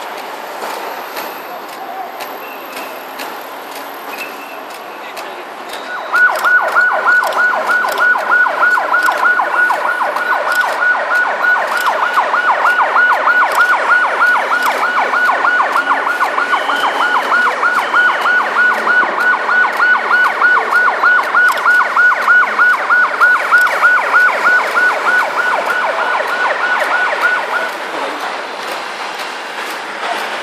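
Vehicle traffic going by, then an emergency vehicle's electronic siren starts about six seconds in with a loud, fast yelp, its pitch rising and falling several times a second. It cuts off suddenly near the end.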